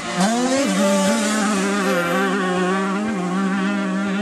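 Motocross dirt bike engine revving up just after the start, then running at fairly steady revs with small rises and falls.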